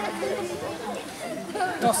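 Several voices talking at once, overlapping and fairly low; no clear single line of speech, with a clearer word near the end.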